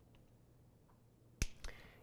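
A single sharp click about one and a half seconds in, with a fainter click just after it, against otherwise quiet room tone.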